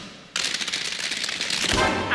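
A dense, rapid clatter of sharp percussive clicks inside a show-tune recording, starting about a third of a second in after a brief lull. A singer comes in with a held note near the end.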